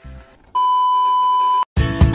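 A steady electronic beep, one unwavering tone, held for about a second, then strummed guitar music starts near the end.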